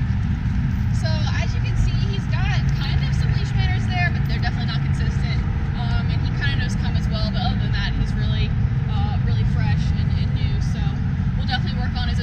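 Outdoor ambience: a steady low rumble throughout, with birds chirping in quick, repeated calls and short pitch glides.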